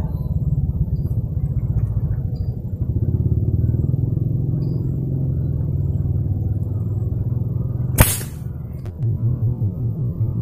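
A steady low rumble, then about eight seconds in a single sharp crack with a brief ring: a homemade PVC pneumatic fish spear gun, pressurised by 30 strokes of a sprayer pump, firing its spear.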